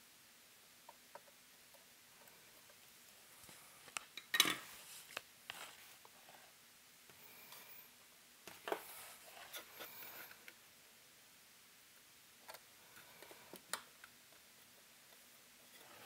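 Faint, scattered small metallic clicks and taps of a soldering iron and component leads being handled while a tiny LED is soldered onto a terminal strip. The loudest clatter comes about four seconds in, with lighter clicks around nine and fourteen seconds.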